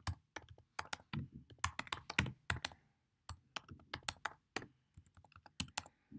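Typing on a computer keyboard: a quick, irregular run of key clicks, with a short pause about three seconds in.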